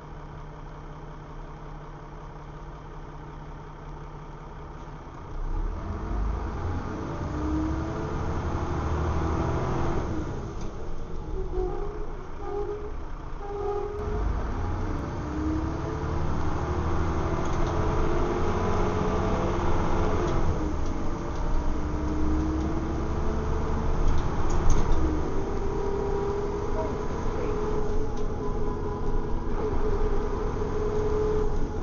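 Diesel engine of a Dennis Trident double-decker bus, heard from inside the saloon. It runs at a low, steady idle for the first five seconds or so, then gets louder as the bus pulls away. Its note rises through the gears, with short drops in level at the gear changes, and it stays up under way.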